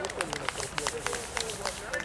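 A few spectators clapping unevenly, several claps a second, with children's voices calling out over it.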